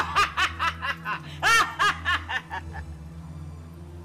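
A man laughing in a quick run of about a dozen short, pitched bursts over the first three seconds, the loudest about a second and a half in, over a low steady hum.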